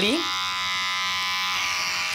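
Corded electric hair clippers running with a steady buzz while cutting a man's hair.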